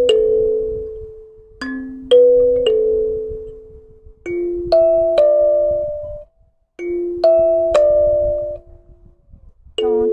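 Instrumental music: a plucked or struck melodic instrument playing short phrases of three ringing notes, each note fading out, the phrase starting again about every two and a half seconds.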